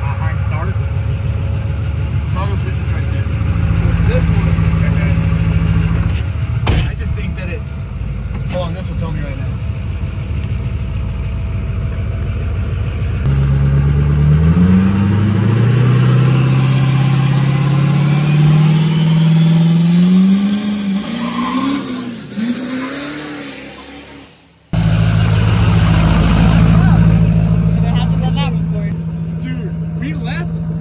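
Duramax diesel truck engine idling, then heard from outside accelerating hard away, its pitch climbing in steps like gear changes and fading as it goes; near the end it is idling again.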